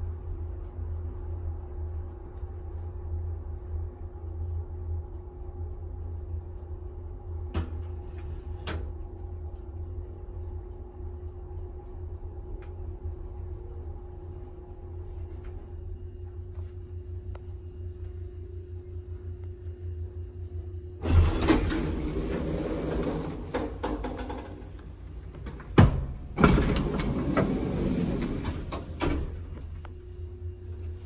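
Antique elevator car travelling, a steady motor hum with a couple of relay clicks about eight seconds in. About 21 s in, the loud rattling rush of the car's doors sliding, lasting about three seconds, and again from about 26 s for about three seconds.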